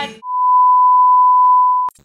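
A single loud, steady electronic beep tone held for nearly two seconds, which cuts off suddenly with a click near the end.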